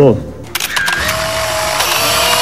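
Many press camera shutters clicking rapidly in a dense flurry starting about half a second in, with a faint steady tone underneath.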